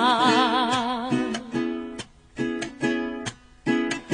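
A soprano holds the last sung note of the phrase with wide vibrato for about a second. Then a strummed string instrument plays short chords with brief gaps between them.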